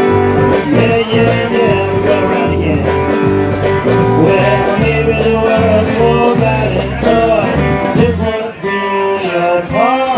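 Live rock band playing an instrumental passage: a fingered electric bass line under electric guitar with bent notes. The bass line drops out at about eight and a half seconds.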